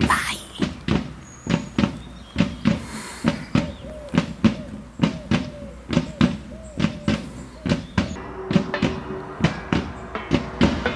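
A group of drums played with sticks in a steady marching rhythm, about two to three strokes a second.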